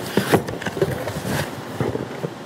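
A cardboard box being handled and rummaged through by hand: irregular rustles, scrapes and light knocks.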